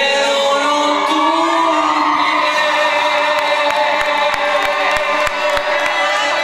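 Live chamamé on button accordion and guitar, with a man singing through a microphone. The accordion holds long sustained notes, and from about halfway through, guitar strokes tick out a steady beat.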